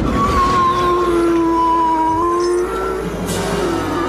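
Dramatic orchestral-style background music: one held note with a slight wobble, sustained for about two and a half seconds and fading near the end, over a low rumble.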